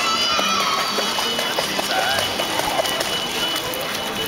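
Water sloshing and splashing as a child wades and plays in a swimming pool. A child's high-pitched squeal sounds at the start, and children's voices come and go.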